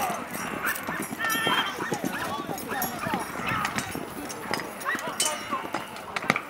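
Mock melee combat: repeated knocks and clatter of weapons striking shields, with a brief ringing metal clash about one and a half seconds in, and men shouting.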